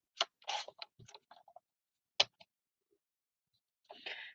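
A paper trimmer and paper being handled: two sharp clicks about two seconds apart, with paper rustling and sliding between them.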